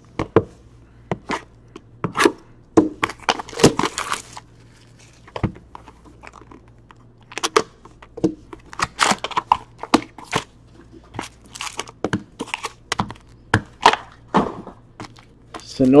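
Hockey card packs being torn open and handled: an irregular run of short crinkles, rips and clicks from the wrappers and the cards, with a few denser flurries.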